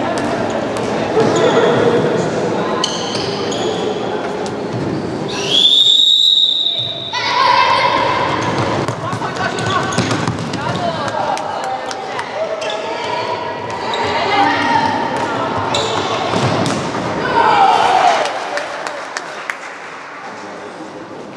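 A handball bouncing repeatedly on a wooden sports-hall floor amid voices calling out across the hall. About a third of the way in, a referee's whistle blows once, lasting about a second and a half.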